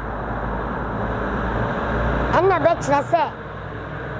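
Rumbling noise of a passing road vehicle, swelling to a peak about two seconds in and then easing off. A few words of speech come over it just after the peak.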